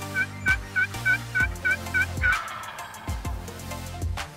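Turkey yelping: a run of about eight short, evenly spaced notes, about three a second, getting louder and stopping a little past two seconds in. It plays over electronic music with a heavy bass beat.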